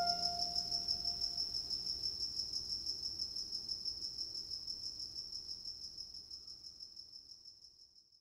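The tail of a music track: a last plucked note rings out and dies away in the first second or so, leaving a cricket's high, rapidly pulsing chirp that fades out slowly and stops right at the end.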